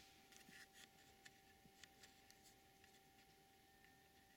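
Near silence: indoor room tone with a faint steady hum and a few faint scattered clicks in the first half.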